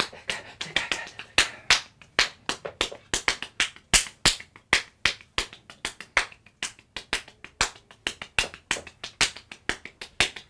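Finger snaps and hand claps in a quick, syncopated rhythm: sharp cracks coming several times a second, unevenly spaced.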